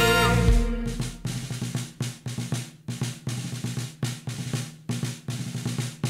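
Drum break in a show-tune backing track. The held sung chord dies away in the first second, then snare and bass drum hits follow in a syncopated pattern.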